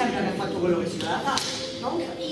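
A voice declaiming lines on stage, with a single sharp crack about one and a half seconds in.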